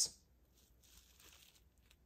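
Faint, brief rustling as an action figure's thin, soft faux-leather robe is handled and lifted.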